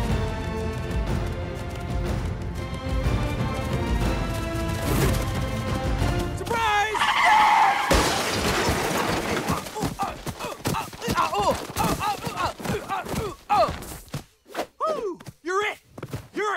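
Film-score music with held chords, then about six and a half seconds in a loud cartoon scream and a crash as the animated lion tackles the zebra, followed by a string of short cries and grunts as the music drops away near the end.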